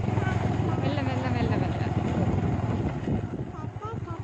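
Motorcycle engine running with road and wind noise while riding. Near the end the engine slows to a slower, pulsing beat and gets quieter, as when the bike eases off.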